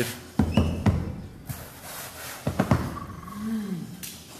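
A few dull thumps and knocks in two clusters about two seconds apart, from a felt acoustic panel being pressed and smacked onto a wall, followed near the end by a short hummed vocal sound that rises and falls in pitch.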